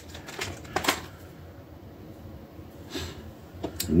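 A few light clicks and taps of small hobby tools being picked up and handled on a tabletop in the first second, one sharper than the rest. Then quiet room tone, with another click near the end.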